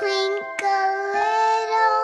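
A child's voice singing over gentle music, holding long notes.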